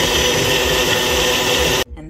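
Ninja Foodi Power Nutri Duo personal blender running at full speed, blending a frozen-fruit smoothie: a loud, steady motor and blade noise that cuts off suddenly near the end.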